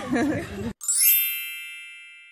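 A single bright chime, an editing sound effect marking the cut to a title card, struck just before a second in and fading slowly.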